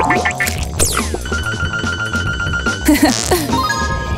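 Background music with a cartoon sound effect: a falling whistle about a second in, then a steady high electronic tone held for nearly two seconds.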